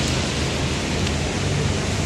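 Heavy rain falling steadily, with a low rumble of traffic on a wet road underneath.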